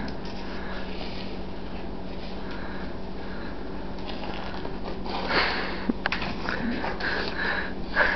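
A person biting into and chewing a raw apple, breathing through the nose, with one louder sniff or breath about five seconds in. A low steady hum runs underneath.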